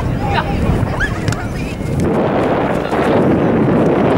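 Wind blowing on the microphone, building to a loud, steady rush about halfway in. Players' shouts ring out across the field in the first second or so.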